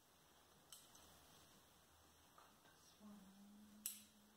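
Near silence with two sharp clicks of ikebana scissors snipping stems: a faint one under a second in and a louder one near the end.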